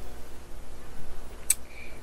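Steady low rumble of outdoor background noise, with one short sharp click about one and a half seconds in.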